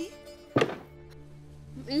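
A single sudden hit about half a second in that drops quickly in pitch, then a low steady music drone holding underneath: a dramatic sound-effect sting of the kind laid under a tense moment in a TV drama.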